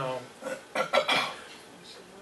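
A short cluster of sharp clinks and knocks about a second in, like hard objects such as a glass or cup being handled on a table close to a microphone.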